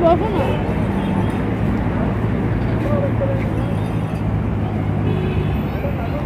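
Steady background din of road traffic, a continuous low hum, with brief faint voices of people nearby.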